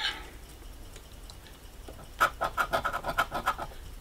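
A heavy coin scraping the latex coating off a scratch-off lottery ticket, starting about two seconds in as a quick run of short strokes.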